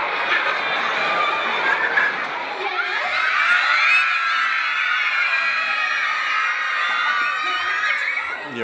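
A large audience of young children shouting and calling out together, many high voices overlapping, the calls becoming longer and more drawn out from about three seconds in.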